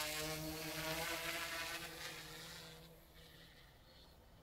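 Multirotor camera drone's propellers humming steadily, fading away over about three seconds as the drone flies off into the distance.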